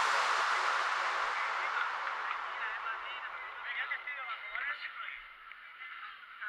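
Faint voices of people talking and calling, under a hiss that fades away over the first few seconds.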